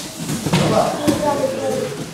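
Indistinct voices talking, with a short knock about a second in.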